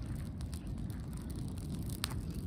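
A pile of dry grass burning with tall open flames: a steady low rumbling roar with a few faint crackles.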